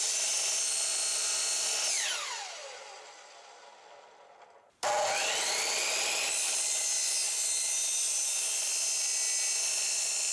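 Electric miter saw cutting thin-wall PVC pipe: the motor runs steadily, then winds down with a falling whine after about two seconds. Near the middle it starts abruptly, whines up to speed and runs steadily on.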